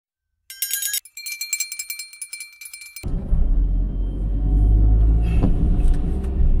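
A short, bright, jingling intro sting with bell-like tones, cut off suddenly about three seconds in by the steady low rumble of a car driving, heard from inside the cabin.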